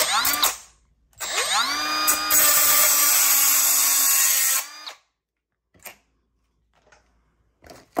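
A Milwaukee M12 Fuel compact cut-off tool gives a short blip of the trigger, then spins up with a rising whine. For about two seconds it grinds through a steel dipstick with a steady whine and a loud hiss. It winds down about halfway through.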